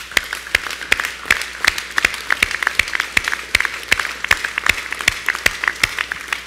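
Audience applauding, with many hands clapping together and some sharper single claps standing out.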